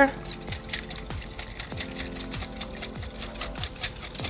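Wire whisk beating a thin egg-and-milk crepe batter in a glass mixing bowl, the wires clicking against the glass many times in quick, uneven succession, with soft background music underneath.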